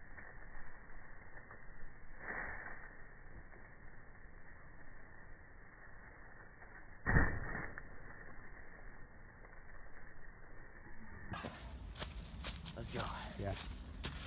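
Muffled, dull-sounding outdoor noise with a soft thud about two seconds in and a louder thud about seven seconds in, as a person lands a jump onto a creek's gravel bank. Near the end the sound turns clear and dry leaves crunch and rustle underfoot.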